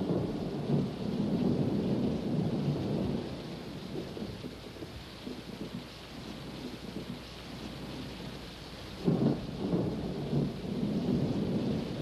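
Steady rain with rolling thunder, and a louder rumble of thunder about nine seconds in.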